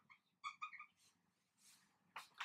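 Faint, short squeaks of a marker pen writing on a whiteboard, a quick run of them about half a second in.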